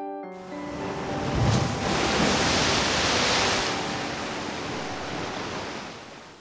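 A transition sound effect: a rush of noise like a breaking wave swells up over about two seconds, then slowly fades, over soft background music.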